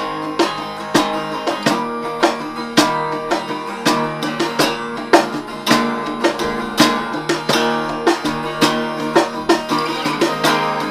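A hollow-body archtop guitar strumming chords, with a cajon played alongside it as hand-slapped strikes that keep a steady beat.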